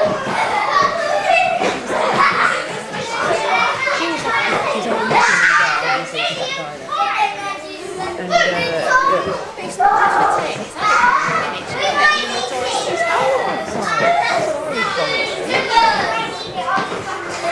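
A group of young children talking and calling out over one another as they play, a continuous overlapping chatter of small voices.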